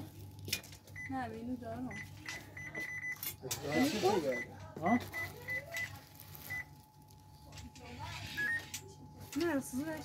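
Short electronic beeps, all at one high pitch, around twenty in irregular quick runs over the first six or so seconds, like keys being pressed on an electronic keypad, with voices talking over a steady low hum.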